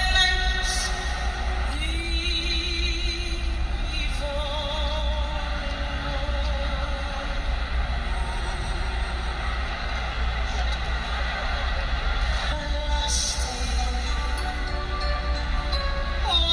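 A woman singing a slow ballad with band backing, holding long notes with vibrato, over a steady low hum.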